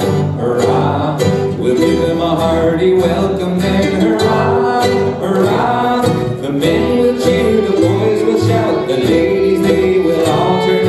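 Acoustic old-time string band playing live: banjo, guitar, fiddle and upright bass in a continuous, steady tune.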